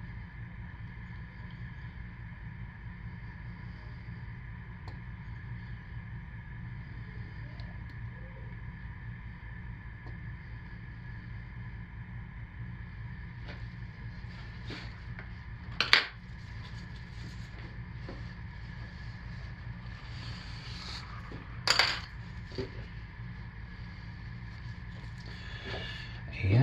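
Steady low room hum with a few light clicks of tools being handled and set down on a countertop, and two louder sharp knocks, one about two-thirds of the way through and one about five seconds later.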